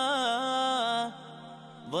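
Male singer performing an Arabic song over a steady accompaniment drone. He holds one long note with a wavering pitch, pauses briefly, then glides up into the next phrase near the end.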